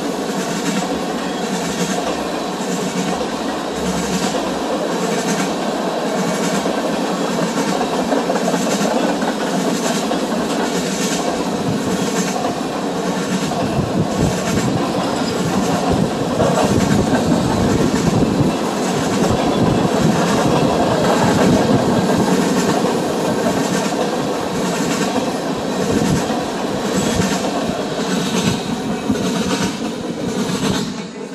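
Freight train of tank cars rolling past close by: a steady rumble of steel wheels on rail with a regular clickety-clack of wheel sets crossing rail joints, a little more than once a second. The low rumble grows heavier about halfway through.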